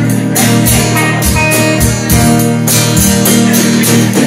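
Live band playing an instrumental passage with no vocals: electric guitar and strummed acoustic guitar over drums, with regular cymbal hits.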